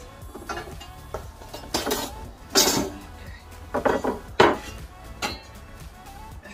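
Flat black metal plates of a folding fire pit clanking and knocking against each other as they are picked up and slotted together, in about eight irregular clanks.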